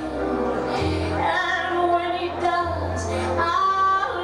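A song with a woman singing a melody over instrumental accompaniment, with long-held low bass notes underneath.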